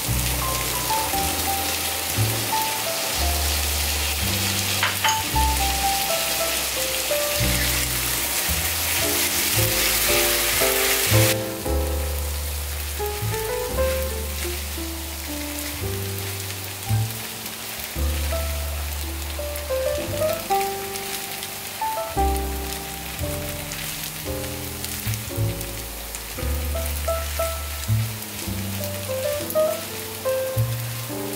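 Background music with a steady bass line, over the sizzle of flat rice noodles and seafood stir-frying in a pan. The sizzle is loud for about the first 11 seconds, then drops off suddenly and carries on much fainter.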